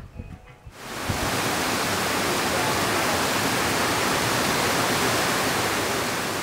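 Water pouring over the weirs between concrete trout raceways: a loud, steady rushing that fades in about a second in.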